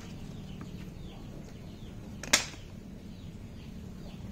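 One sharp knock of a plastic crate lid being put down, about two seconds in, with faint bird chirps in the background.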